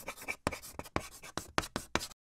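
Chalk writing on a blackboard: a quick series of scratchy strokes and taps, about three to four a second, that stops abruptly.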